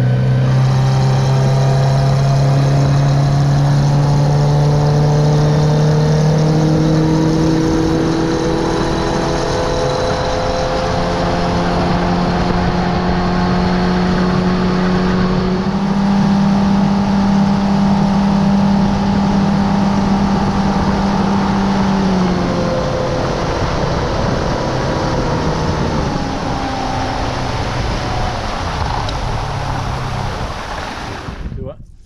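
Outboard motor driving a bass boat at speed, running steadily with a whine whose pitch climbs in a few steps, then drops back and gets quieter about three-quarters of the way through.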